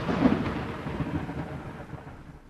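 Rumbling thunder with rain, fading steadily away.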